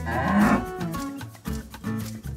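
A yak's low, cattle-like mooing call, lasting under a second near the start, over background music with a steady beat.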